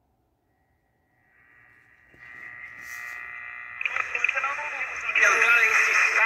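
A Sharp Solid State pocket transistor radio being switched on and tuned. After about a second of silence a thin steady whistle fades in, and a little before the four-second mark a station's talk comes through the small speaker, loud, with sweeping whistles over it.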